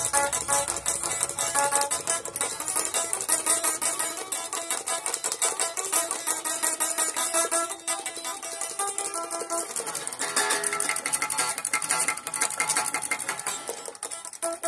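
Stratocaster-style electric guitar played continuously, with strummed chords changing every second or so.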